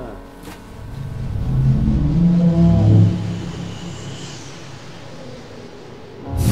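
A deep rumbling swell in a film trailer's soundtrack, building over the first three seconds and then fading away, with a faint high tone in the middle.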